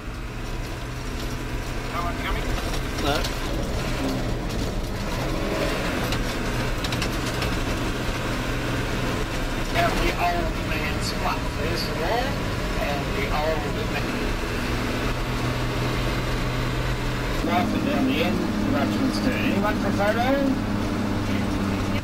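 Hino four-wheel-drive coach's engine running steadily on a dirt road, heard from inside the vehicle as a low hum. About seventeen seconds in, the engine note changes and a second, higher hum joins it.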